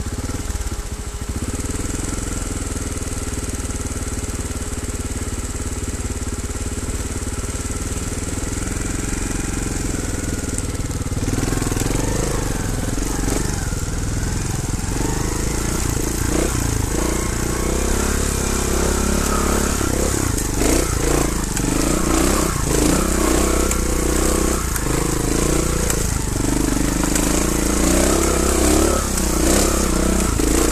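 Trials motorcycle engine idling steadily, then from about ten seconds in revving up and down as the bike rides off, growing louder with a changing, uneven note.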